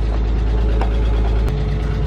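1999 Porsche Boxster's flat-six idling steadily, with the lifter knocking that the owner puts down to its hydraulic lifters after years of sitting. A couple of light clicks as the fuel filler door is opened.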